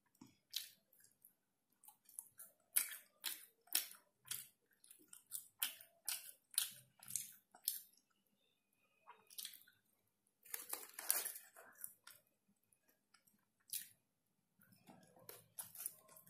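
Close-miked chewing of French fries, irregular soft crackles and mouth clicks a couple of times a second, with a longer rustle of the paper fry bag about two-thirds of the way through.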